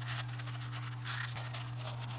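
Hand wiping the oily drain-plug area of a transfer case clean: irregular scratchy rubbing over a steady low hum.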